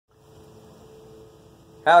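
A faint, steady hum made of several tones, with a man's voice starting near the end.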